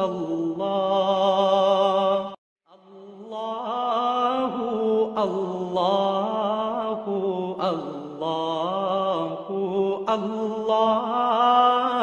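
A male voice chanting a slow devotional melody in long, drawn-out, wavering notes. It breaks off for a moment about two and a half seconds in, then carries on.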